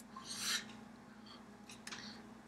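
Hands brushing and rubbing against each other while signing, a short rasping swish about half a second in, then a couple of faint clicks near the end.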